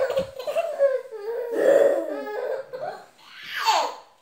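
A baby laughing in a string of high-pitched bouts, ending in a falling squeal.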